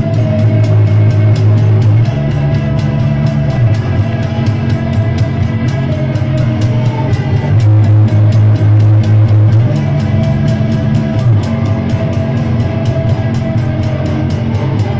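Post-punk band playing live, loud: electric guitars, bass guitar and drums. Low bass notes shift every couple of seconds over a steady, fast drum beat.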